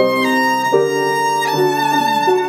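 Violin playing a slow melody of held bowed notes, each note changing smoothly to the next.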